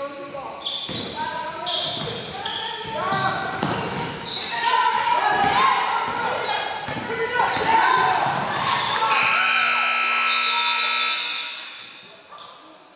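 A basketball being dribbled on a hardwood gym floor amid voices, then the scoreboard horn sounds one steady blast of about two seconds near the end, marking the end of the quarter.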